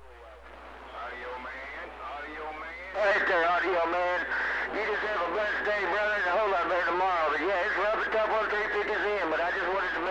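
Another station's voice coming in over a CB radio receiver, thin and narrow-band like radio speech. It is faint for the first three seconds or so, then comes through louder and steady.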